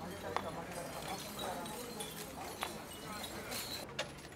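A street procession passing: people's voices in the background with a few scattered sharp clicks and knocks.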